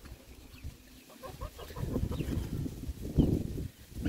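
Chickens clucking in short, repeated calls. About three seconds in comes a louder dull thud, fitting a metal digging bar being driven into the soil of a post hole.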